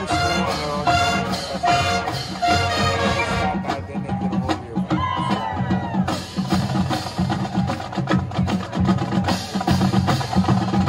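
High school marching band playing its field show: the full band sounds held chords, then about three and a half seconds in the sustained chords stop and the percussion section carries on alone with a rhythmic drum passage.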